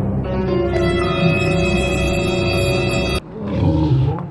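A music sting added in editing: a held chord over a low rumble that cuts off abruptly about three seconds in, followed near the end by a man's low voice.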